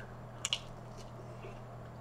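A person biting and chewing pizza crust: two short crisp clicks about half a second in, then fainter chewing, over a steady low hum.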